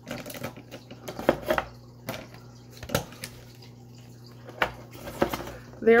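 Pairs of scissors clinking against a tin can and each other as they are put into it: about half a dozen separate sharp clinks and knocks, spread out with pauses between.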